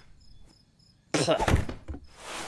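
Crickets chirping steadily in the background of a quiet night scene; a little over a second in, Stitch, the cartoon alien, gives a short, loud, frustrated grunt with a thunk as a book is tossed aside.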